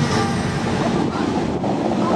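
Steady rush of the Dubai Fountain's water jets shooting up and spray falling back onto the lake.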